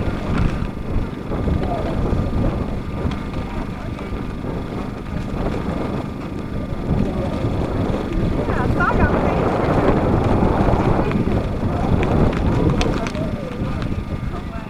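Wind buffeting the microphone in a steady low rumble, with indistinct voices of people talking nearby, busier for a few seconds past the middle.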